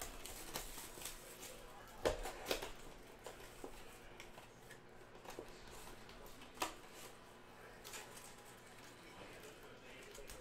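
A cardboard Panini Prizm blaster box of trading cards being opened by hand: faint scattered rustling and clicking of cardboard and foil packs, with sharper snaps about two seconds in and again near seven seconds.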